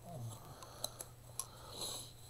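Faint handling of paper and cardstock: a few light clicks in the middle and a soft paper slide and rustle near the end, over a low steady hum.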